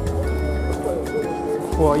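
Background music of steady held notes that change pitch in steps, with a voice beginning to speak near the end.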